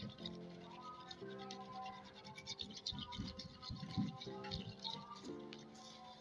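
Fingers working sugar and curd together in a clay bowl make an uneven scraping rub of sugar grains against the earthenware. Background music with held notes plays underneath.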